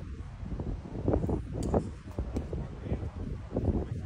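Wind rumbling on the microphone, with faint voices from spectators mixed in.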